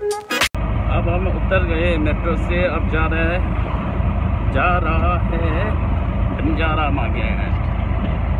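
Music cut off about half a second in, then a vehicle engine's steady low rumble heard from inside an open-sided auto-rickshaw, with voices talking over it now and then.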